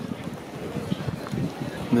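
Wind buffeting the microphone, with the voices of a crowd in the background.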